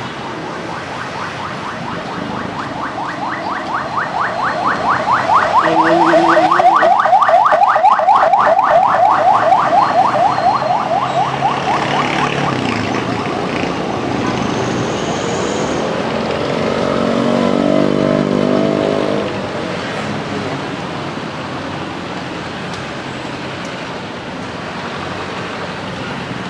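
Street traffic running by, with a loud, rapidly pulsing tone that swells and fades over several seconds, then a vehicle engine passing close near the middle.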